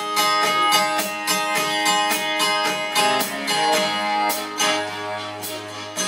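Live band playing the opening of a 1960s pop song, led by a guitar strumming chords about once a second over sustained ringing notes.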